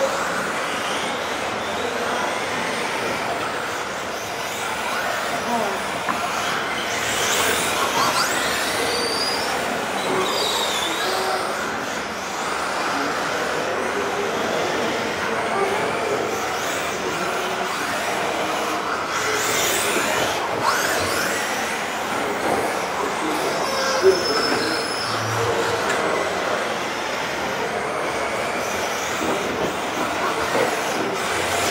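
Radio-controlled cars driving around an indoor hall track: steady running and tyre noise, with motor whines that rise and fall a few times as they speed up and slow down, echoing in the large hall.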